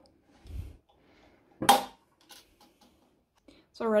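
Quiet handling of an A5 six-ring binder: a dull thump about half a second in, then a few faint small clicks. One spoken word comes in between and is the loudest sound.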